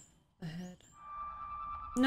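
Animated-episode soundtrack: a brief voice sound about half a second in, then a steady held high tone from about a second in.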